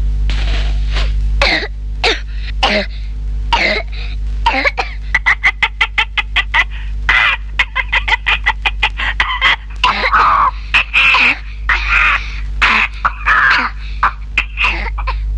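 Cartoon parrot voice coughing and squawking in quick fits, choking on smoke from a smoky clay stove fire, over background music and a steady low hum.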